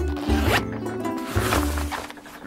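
A tent's zipper being pulled open in two long strokes, over background music with a sustained bass line.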